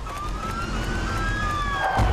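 Police-style siren wailing in the soundtrack of a short computer animation: one tone rises and then eases back down in pitch while a second slides down alongside it, over a low rumble.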